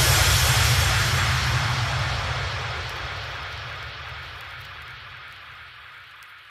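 Closing fade of an electronic house track: a synthesized noise wash over a low rumble, dying away steadily.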